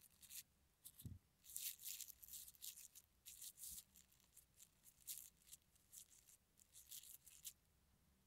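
Faint crinkling and rustling of thin plastic film and a damp paper napkin in short irregular bursts, as a hand and pen tip move over them, with one soft low bump about a second in.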